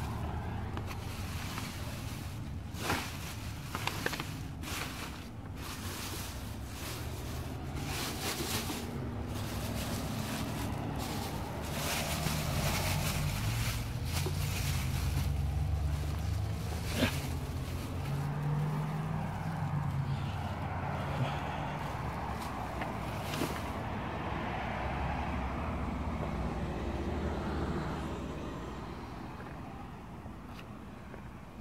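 Plastic trash bags rustling and crinkling as they are handled, with sharp crackles that come thickest in the first half. A low engine rumble swells through the middle and fades near the end.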